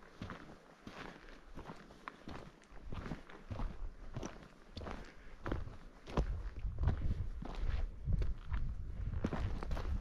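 Footsteps of a hiker walking on a dirt trail, a steady series of crunching steps. A low rumbling noise joins about six seconds in.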